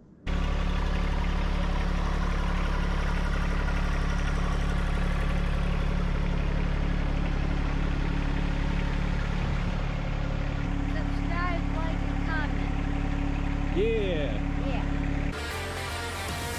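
John Deere 1025R compact tractor's three-cylinder diesel running steadily under load while plowing snow. A few short squeaks are heard over it near the end.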